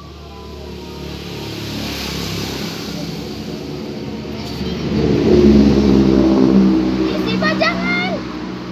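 A motor vehicle's engine running close by, growing steadily louder over about five seconds, loudest a little past the middle, then easing off.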